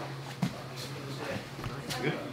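Training-room ambience during drilling on jiu-jitsu mats: a steady low hum, faint background talking, and one short thud about half a second in.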